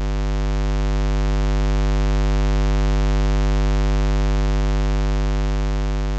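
A steady, low electrical buzz like mains hum, rich in overtones, holding one unchanging pitch and only slightly swelling and easing in loudness.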